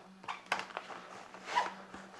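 A laptop and tablet being slid into the sleeve of a nylon backpack: fabric rustling and scraping with a few light knocks.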